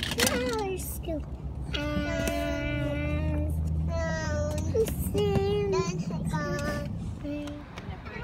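A young child singing, holding long notes with pauses between them, over the low steady rumble of car road noise.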